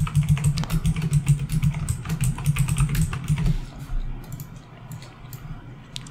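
Typing on a computer keyboard: a quick run of keystrokes as a loopOut("cycle") expression is entered, thinning out after about four seconds. A low hum sits under the first three and a half seconds.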